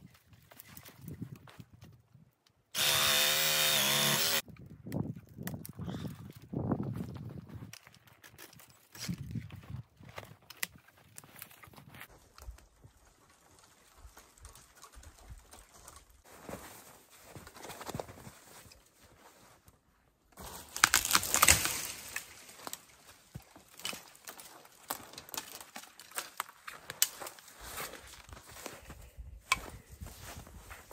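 Cordless reciprocating saw run in one steady burst of about a second and a half near the start, cutting a small tree partway through for a hinge cut. Quieter crackling and rustling of branches follows, then a louder burst of snapping and rustling about two-thirds of the way through as the hinged tree is pushed over through the brush.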